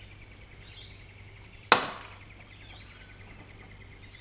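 Cutters snipping through a thin wire control rod: one sharp snap about two seconds in.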